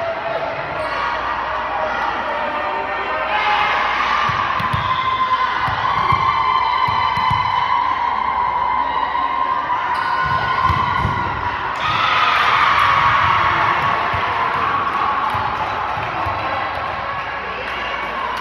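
Spectators and players cheering and shouting in an echoing gymnasium during a volleyball rally, swelling about three seconds in and again about twelve seconds in, with scattered thuds of the ball being struck and bouncing.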